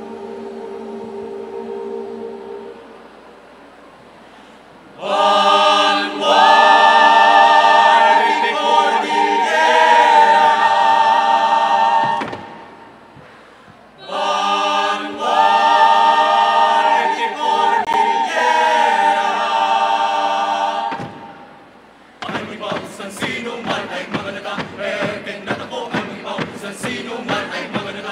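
Mixed choir singing a cappella: a soft held chord, then two loud, sustained passages of several seconds each with a brief lull between them. Near the end the singing turns choppy and rhythmic, in short detached sounds.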